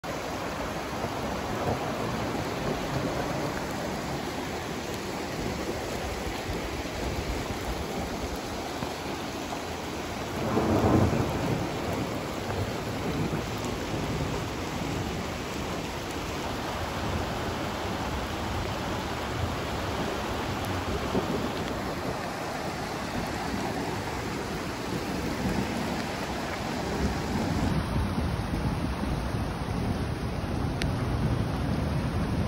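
Flash-flood water flowing down a street, a steady rushing noise. A louder low rumble swells for a couple of seconds about ten seconds in.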